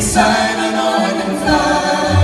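A group of vocalists singing together in harmony, with the bass and drums dropped out so the voices stand almost alone.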